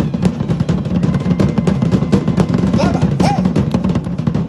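Live drumming: a fast, dense run of drum strikes that keeps going without a break, a driving beat for Polynesian dancing.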